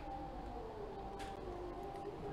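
Faint, distant Arabic chanting over a loudspeaker: long held notes, one slowly falling in pitch.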